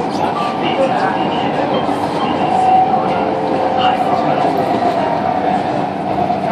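Inside a CSR Nanjing Puzhen metro car on Shenzhen Metro Line 4: the steady running noise of the train's wheels and running gear on elevated track, with a constant high hum running through it, as the train nears a station.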